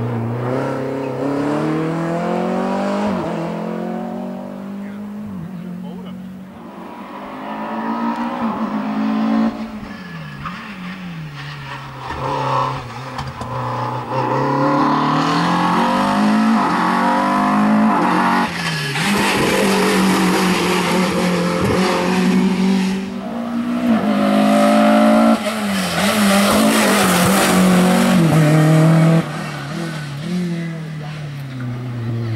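Renault Clio RS Cup race car's four-cylinder engine revving hard and falling back over and over as the car brakes and accelerates through cone chicanes. It grows louder as the car comes closer and drops off suddenly near the end.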